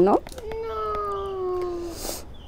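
One long held voice-like tone of about a second and a half, its pitch sliding slowly downward.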